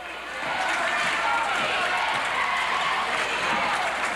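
Gymnasium crowd noise during live basketball play: many spectators shouting and cheering at once, swelling in the first half-second and then holding steady.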